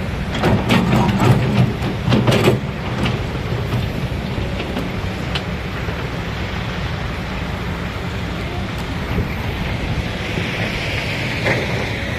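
An engine running steadily with a low hum, with some louder irregular noises in the first three seconds.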